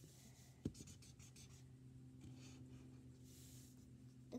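Faint scratchy strokes of a felt-tip marker on paper as a cloud is coloured in, with one light tap about two-thirds of a second in, over a low steady hum.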